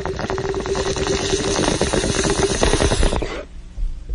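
Bong hit sound effect: water bubbling rapidly through a bong with the hiss of a long inhale, stopping a little over three seconds in.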